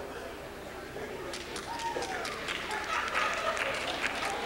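Audience applauding: scattered hand claps begin about a second in and thicken into steady applause over a murmur of voices.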